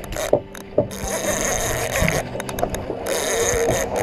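Big gold conventional fishing reel ratcheting in two runs of about a second each, with scattered knocks from the rod and reel being handled.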